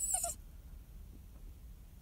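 Small dog giving one brief, high-pitched whine at the very start, then falling quiet. It is the anxious crying of a dog left in the car while its owner is away.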